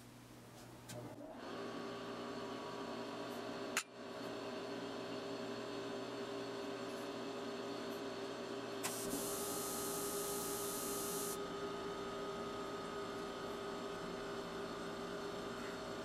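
A room heater running: a steady hum with a few steady tones comes on about a second in and keeps going. There is a sharp click near four seconds in.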